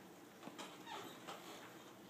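Dry-erase marker squeaking faintly against a whiteboard in a few short strokes.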